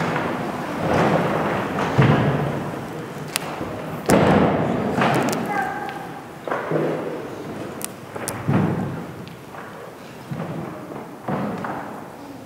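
A series of dull thuds and knocks, about one every second or two, each echoing in a large church. Faint voices sound underneath.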